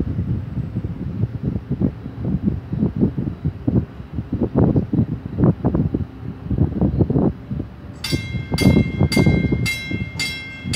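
Gusty wind rumble on the microphone. About eight seconds in, the drawbridge's warning bell starts ringing, about two strikes a second, as the crossing gates begin to rise.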